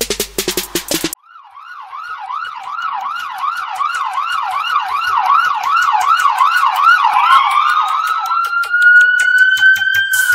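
Trap track in which the drum beat cuts out about a second in and a siren-style wail takes over, warbling up and down about three times a second. From about seven seconds a slow rising siren tone joins it, with faint hi-hat ticks underneath.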